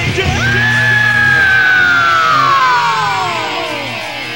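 Heavy metal band's live rehearsal demo: a long high held note slides steadily down in pitch over about three seconds, while the low bass end thins out partway through.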